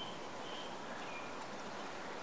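Quiet outdoor backyard ambience: a steady, even hiss with a few brief, faint high chirps.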